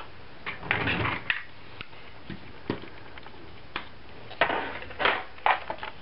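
A plastic paper-scoring board and strips of patterned cardstock being handled on a craft mat: scattered light knocks, taps and paper rustles, a little busier in the second half.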